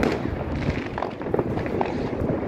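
Many fireworks and firecrackers going off at once: a continuous rumble of distant bangs, with sharp cracks several times a second.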